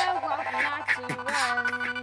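Live band music: a percussive beat under held tones, with sliding pitches over them.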